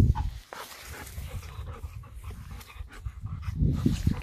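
A dog panting, with rustling in the grass that grows louder near the end as the dog comes close.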